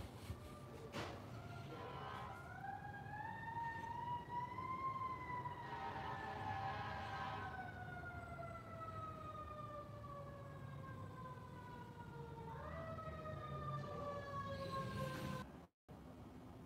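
Emergency-vehicle siren wailing faintly. Its pitch rises over a few seconds and falls slowly for several more, then jumps back up near the end and falls again.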